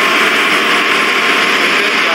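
Steady, loud machinery noise of a ship's engine room, an even din with no breaks or changes.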